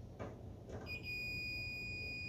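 Digital multimeter's continuity beeper giving one steady high-pitched tone, starting about a second in after a couple of faint probe taps, with the probes across the 5-volt rail and ground. It means the short to ground is still there after the suspect filter capacitor was lifted.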